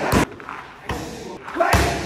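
Kicks landing on handheld Thai pads: a sharp smack just after the start and a heavier one about a second and a half later. Each strike comes with the striker's hissed exhale.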